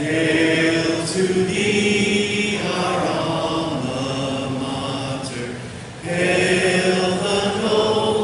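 A large group of people singing a university alma mater together. One sung line ends and the next begins about six seconds in.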